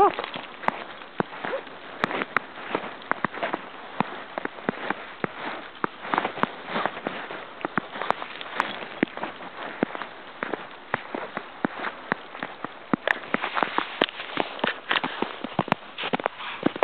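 Footsteps crunching in deep snow, an irregular run of small crackles several times a second, as a person and a small dog walk through the snow.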